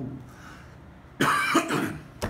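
A man coughs about a second in: a short, loud, rough burst.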